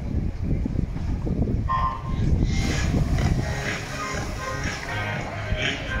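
Electronic starting beep for a swimming race, short and single, about two seconds in over the crowd's murmur. The crowd noise then grows louder and busier as the swimmers dive in.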